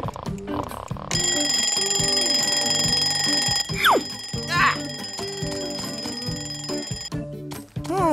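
Alarm clock ringing, starting about a second in and cutting off near the end, over background music. A short falling glide sounds about midway.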